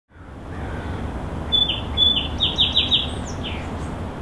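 Birds chirping: a quick run of short, downward-sliding notes in the middle, over a steady low background rumble.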